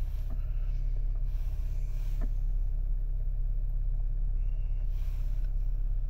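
Steady low hum inside a car's cabin, with two faint taps on the infotainment touchscreen, the first just after the start and the second about two seconds in.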